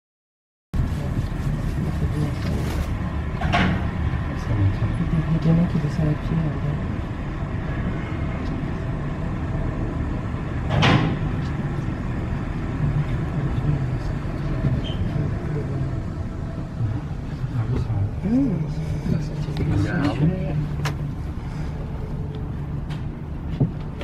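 Passenger lift climbing inside the Eiffel Tower, heard from inside the cabin: a steady low rumble and hum, with two sharp knocks and some murmured voices near the end.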